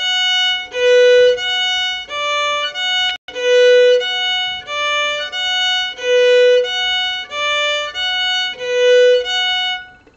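Fiddle (violin) played slowly in separate bow strokes with no slurs, crossing between the A and E strings and moving between D and F sharp, then E and F sharp, at about two notes a second.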